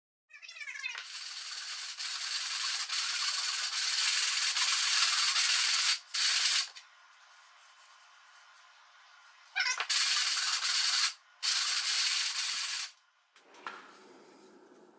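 Wood of a stave snare-drum shell being worked, giving a steady hissing noise that builds over the first few seconds. It breaks off about six and a half seconds in and comes back in two stretches between about ten and thirteen seconds.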